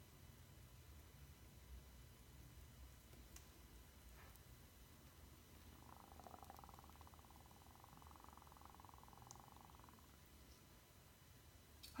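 Near silence with a faint low hum, and a faint rapid buzzing for about four seconds in the middle.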